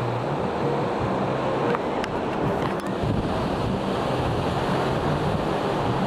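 Steady wash of Baltic Sea surf breaking on a sandy beach, mixed with wind blowing over the microphone.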